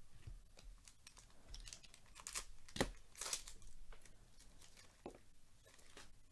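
A trading-card pack wrapper being torn open and crinkled, in a few short rips with the sharpest about three seconds in, then the cards handled and shuffled.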